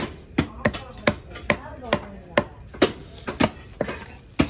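Knife chopping through tuna on a wooden chopping block in rapid, sharp strokes, about three a second.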